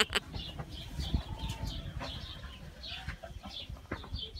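Feral pigeons faintly cooing in a barn loft, among many short high bird chirps repeating every half second or so, over a low rumble.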